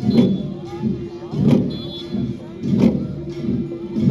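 A massed group of Garo long drums beaten together in a slow, steady rhythm, with a heavy beat about every 1.3 seconds and lighter strokes between. A steady held note sounds under the drumming.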